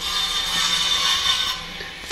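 A steady mechanical whirring noise with a hiss in it, fading out near the end.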